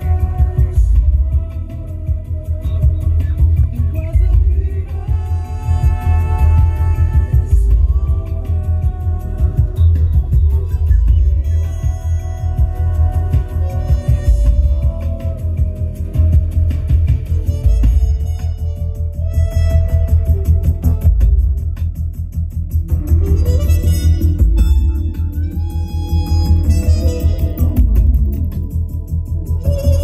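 Music from a CD playing loud through a 2007 Jaguar XK's factory sound system, heard inside the cabin, with heavy bass from the subwoofers turned up; the owner calls it "definitely banging in here".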